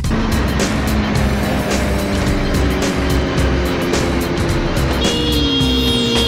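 Sport motorcycle at speed with heavy wind noise, its engine note falling over the last couple of seconds as the bike slows. Background music with a steady beat plays under it.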